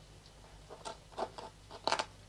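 A few soft rustles and clicks of hands handling a potted African violet and its leaves, the loudest near the end.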